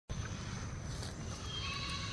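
Steady low outdoor rumble with distant thunder from a passing storm, and a faint steady high-pitched tone above it.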